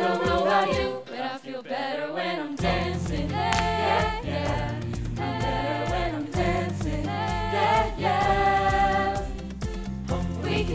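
Show choir singing in unison over a pop backing of bass and drums. The beat drops out near the start and comes back in about two and a half seconds in, under the voices.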